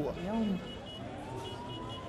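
An emergency vehicle siren, its tone climbing slowly in pitch for about a second before levelling off. A voice is heard briefly just before the siren begins.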